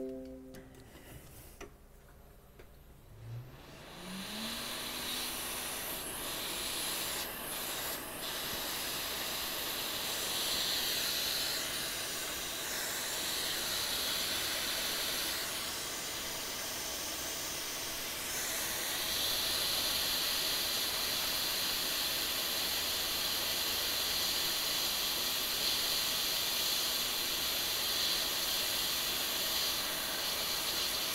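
Hot air rework station starting up with a short rising hum, then blowing a steady rushing hiss of hot air. It is heating a flux-covered backlight driver chip on a MacBook Air logic board to desolder it.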